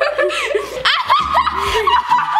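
Several girls laughing and giggling together.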